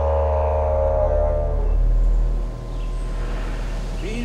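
Soundtrack music built on a low, steady didgeridoo drone; its bright upper overtones fade out a little under halfway through while the deep drone carries on.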